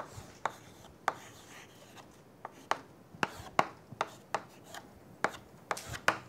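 Chalk writing on a chalkboard: about a dozen sharp, irregularly spaced taps as the chalk strikes the board, with short scratches between them.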